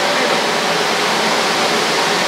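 Steady, even rushing of air from the running fan of an air-cleaning extraction unit.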